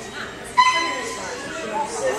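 Small dog giving one sharp, high-pitched bark about half a second in, held briefly before trailing off, over faint voices.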